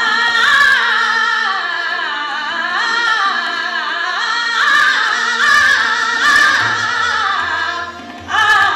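A woman singing an Indian classical vocal line, her voice gliding and ornamenting between held notes, over a steady drone with harmonium and tabla accompaniment.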